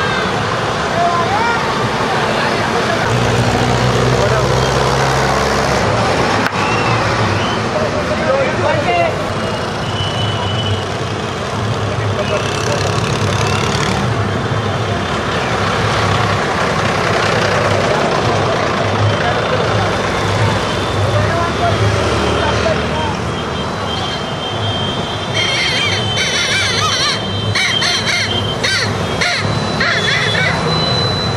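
Procession street noise: a crowd's overlapping voices and calls mixed with the engines of slow-moving trucks and motorbikes, under a low repeating beat. Near the end come a run of sharp cracks and a shrill steady tone.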